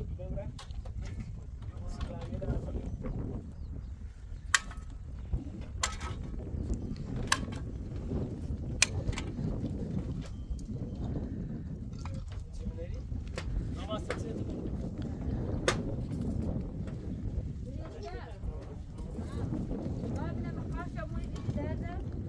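A mason's trowel tapping and setting concrete blocks, making about half a dozen sharp, separate taps a second or more apart over a steady low rumble.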